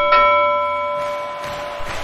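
A bell struck, ringing with several clear overtones and fading away over about a second and a half, over a faint hiss.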